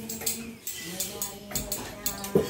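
Clinking and clattering of steel cooking pots and utensils, with several sharp metallic knocks, over a faint background of voices.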